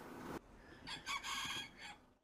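A rooster crowing once, a single cock-a-doodle-doo about a second long that starts a little under a second in.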